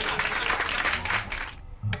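Noisy commotion of rapid clapping-like smacks and laughter, cutting off suddenly about one and a half seconds in, followed by a single low thump.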